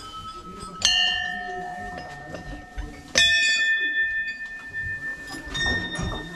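Hanging brass temple bells rung by hand: two strikes about two seconds apart, each clang ringing on with a long, slowly fading tone.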